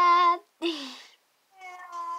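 A girl's stifled, high-pitched laughter behind her hand: three short squeaky vocal sounds, the first held on one pitch, the second falling, the third starting near the end.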